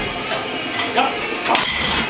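Metal clinks from the weight plates on a heavily loaded barbell during a bench press, with voices in the background.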